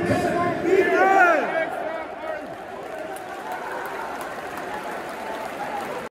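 Sparse football stadium crowd giving a few loud shouted, chant-like calls after a goal, then settling into a steady murmur of crowd noise with scattered claps.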